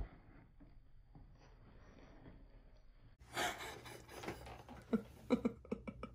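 About three seconds of near silence, then short breathy gasps and bursts of stifled laughter from a boy holding his hand over his mouth.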